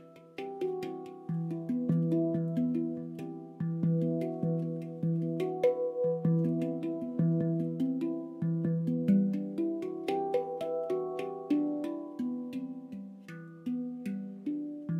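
Symphonic Steel handpan played by hand: a steady, flowing run of finger-struck notes, each ringing on and overlapping the next, over a recurring low note.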